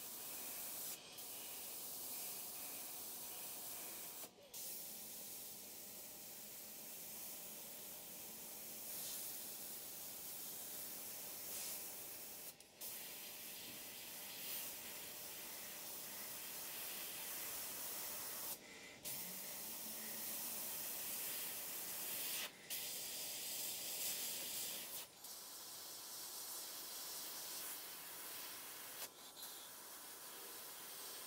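GSI Creos PS.770 gravity-feed airbrush hissing as compressed air sprays paint, breaking off briefly about seven times as the trigger is let back.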